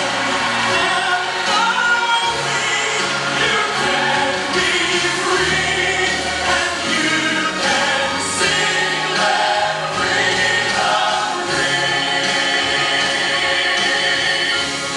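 A choir singing gospel music with instrumental accompaniment, steady and full throughout.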